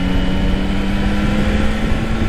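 Motorcycle engine humming steadily under way, rising slightly in pitch, mixed with loud wind rumble on the camera microphone.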